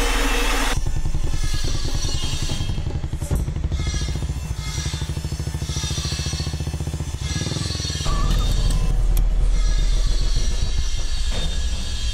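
A motorcycle engine running with a rapid, even beat, under background music. A louder low drone takes over about eight seconds in.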